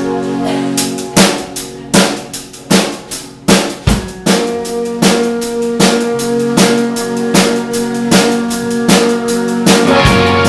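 Indie rock band playing live. Electric guitars and bass hold sustained notes, then the drum kit comes in about a second in with a few heavy accented hits before settling into a steady beat.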